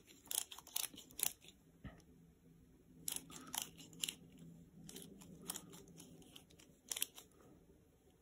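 Faint, irregular clicks and rubbing from a Craftsman torque wrench as its handle is spun clockwise to raise the torque setting.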